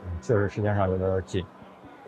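A voice speaking briefly in a couple of short phrases that stop about a second and a half in, leaving a low, steady background hum.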